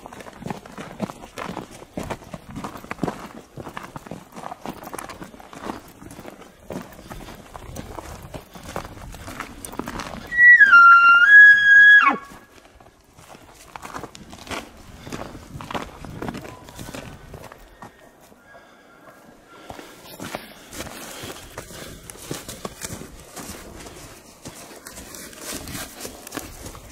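A loud, high whistled elk bugle about ten seconds in, lasting about two seconds: it drops in pitch, steps back up and then breaks off. Hurried footsteps crunch through snowy grass and brush around it.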